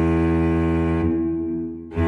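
Cello music: a long, low bowed note that fades away in the second half, with the next phrase entering at the very end.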